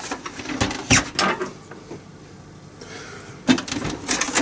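Hands and a screwdriver clicking and knocking against the plastic casing of an Epson EcoTank inkjet printer: a few sharp clicks in the first second or so, a quieter stretch, then another knock near the end.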